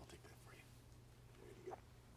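Near silence: a low steady room hum, with a few faint sips from a paper cup, the last one about three quarters of the way through.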